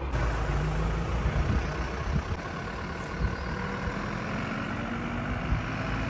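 Small box truck's engine running as the truck pulls away, with a few short thumps along the way.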